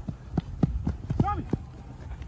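Footsteps of players sprinting on artificial turf close by: about five quick thuds, with a short shout about a second in.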